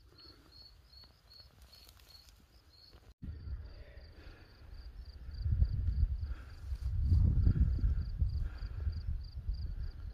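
Cricket chirping steadily, about three chirps a second, over a low rumbling noise that grows louder about five seconds in.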